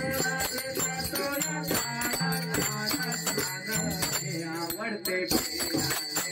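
Devotional bhajan: a man singing into a microphone over the steady rhythmic clash of brass hand cymbals (taal), with a double-headed barrel drum pulsing underneath.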